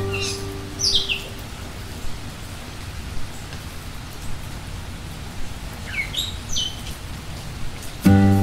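Hot oil sizzling and popping steadily as a small potato-stuffed kachori deep-fries in a miniature clay pot. A few short falling bird chirps come about a second in and again around six seconds.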